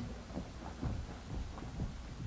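Footsteps on a stage floor: several soft, dull, irregular thuds as a person walks away.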